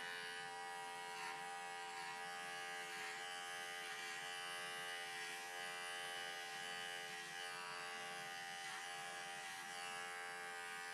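Cordless electric clippers running with a steady buzz as they cut through an angora rabbit's wool.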